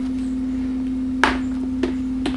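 Steady electrical hum, with two sharp clicks about a second and a bit in and again near the end.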